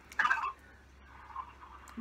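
A voice on the other end of a phone call, heard through the handset's speaker: a short, thin-sounding answer with a muffled murmur after it.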